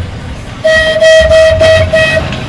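Open-top heritage tram sounding its horn as it approaches: one long held tone that starts about a third of the way in, with a pulsing upper edge about four times a second.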